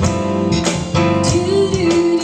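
A band playing a guitar-led passage of a rock song with a steady beat, a sliding note rising and falling late in the passage.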